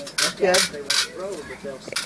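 Metal grill tongs clinking against the grate of a gas grill: a few sharp metallic clicks in the first second.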